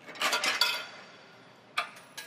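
Metal clinks and rattles from the swing-out LP tank bracket of a Hyundai 30L-9A forklift as the propane cylinder is swung out: a cluster of ringing clinks in the first half-second, then one sharp click near the end.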